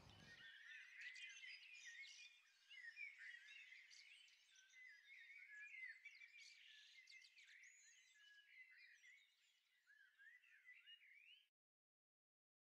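Faint chirping of small animals: many short, high, quick calls overlapping throughout, cutting off suddenly near the end.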